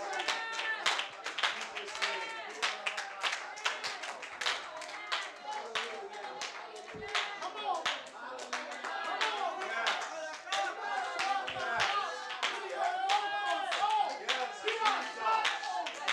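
Congregation clapping and many voices calling out at once, overlapping and unintelligible.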